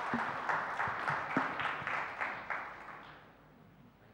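Audience applauding, the clapping dying away about three seconds in.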